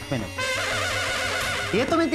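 A horse whinny, one trembling high call lasting a little over a second, over background music.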